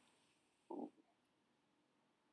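Near silence, broken about two-thirds of a second in by one short, low "ooh" from a person's voice.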